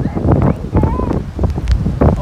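Strong gusting wind buffeting the phone microphone in uneven low gusts, over breaking surf from a rough, stormy sea.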